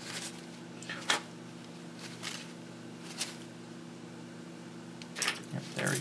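A few light clicks and taps from a small brush and circuit boards being handled on a workbench mat while flux is cleaned off with alcohol, over a steady low hum in the background.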